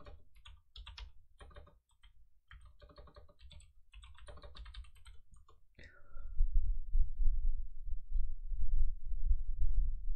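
Computer keyboard typing and clicking in short bursts for about six seconds. A brief falling squeak follows, then a louder, uneven low rumble for the rest.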